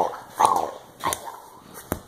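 A toddler's short wordless cry, bark-like, about half a second in, then a fainter one and two sharp knocks.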